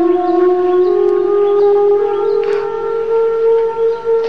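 Film score: a single wind-instrument line holding one long note that climbs slowly in small steps.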